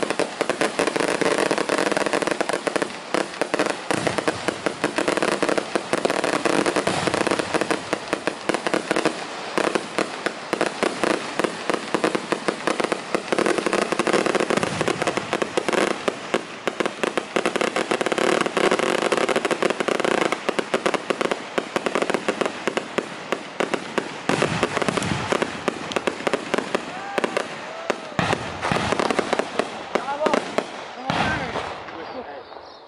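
Strings of firecrackers hanging from a tethered balloon going off in a rapid, continuous crackle of bangs.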